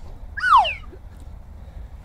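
A single loud cry that falls steeply in pitch, lasting about half a second, with a low rumble underneath.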